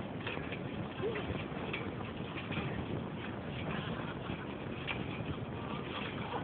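Trampoline bouncing: faint, irregular thumps of jumpers landing on the mat over a steady background hiss.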